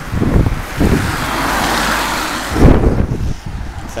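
A car passing close by, its road noise swelling and fading over about two seconds, with wind buffeting the microphone in a loud low rumble near the end.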